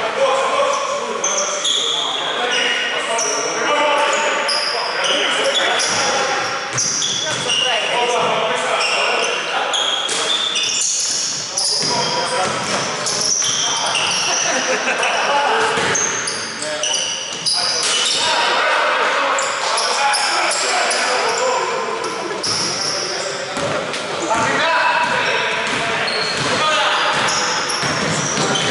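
Basketball bouncing on a hardwood court during live play, with players' voices, echoing in a large gym hall.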